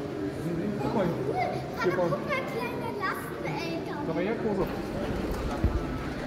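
Indistinct voices of several people talking, with no clear words, and a short low thump near the end.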